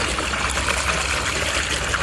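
Water pouring steadily from a tipped bucket into a pond as crucian carp fry are released with it.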